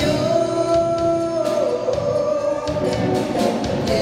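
Small live band playing a rock song: strummed acoustic guitars and a drum kit, with a voice holding a long note that slides down about a second and a half in.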